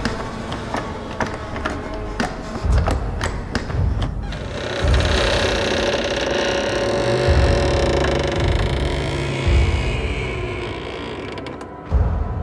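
Film sound design: a run of irregular clicks and creaks over low thuds for about four seconds, then a sustained grating swell that fades just before the end.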